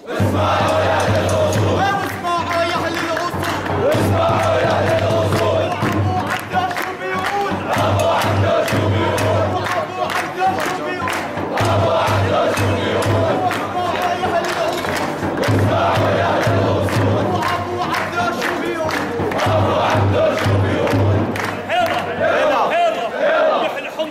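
A large crowd of men chanting a traditional Homsi 'arada in unison, with steady rhythmic hand clapping and a repeated low beat under the voices.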